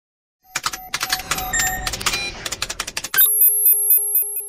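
Electronic intro-logo sound design. After a brief silence, a quick run of sharp clicks and short glitchy tones, then from about three seconds in a pulsing high-pitched electronic beeping.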